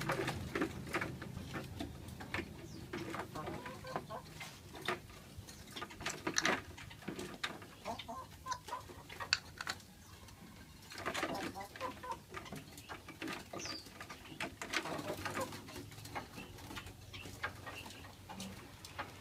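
Irregular light taps and scrabbling of a small songbird hopping and fluttering against the walls of a clear plastic container cage, restless because it is not yet used to the cage. Other birds call in the background.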